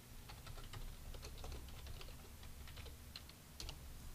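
Typing on a computer keyboard: a faint, irregular run of quick key clicks.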